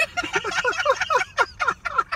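A person laughing hard: a fast run of short, high-pitched 'ha' sounds, each falling in pitch, several a second without a break.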